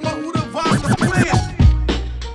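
Hip hop track with turntable scratching: quick rising and falling scratch glides over a drum beat, then a heavy bass drum hit near the end.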